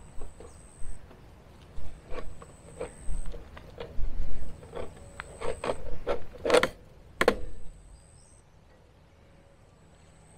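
Fencing wire and a metal hand tool clinking and rattling as the wire is worked at the post: a run of irregular sharp clicks and knocks, the loudest two about six and a half and seven seconds in, stopping about eight seconds in.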